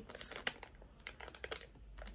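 Light clicks and crinkles of a plastic razor package being handled in the fingers, with a slightly louder rustle just after the start.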